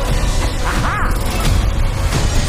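Animated-film soundtrack: music mixed with dense mechanical sound effects, with a short rising-and-falling glide about a second in.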